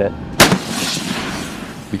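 M109A6 Paladin self-propelled 155 mm howitzer firing a single round: one sharp blast about half a second in, followed by a rolling rumble that fades over the next second and a half.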